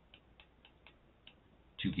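About five faint, irregular ticks of a stylus tapping a writing tablet as numbers are written, followed by a man's voice near the end.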